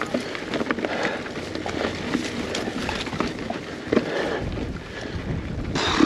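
Full-suspension mountain bike climbing a rocky dirt trail: tyres rolling over rocks and gravel with many small knocks and rattles from the bike, under wind noise on the camera microphone.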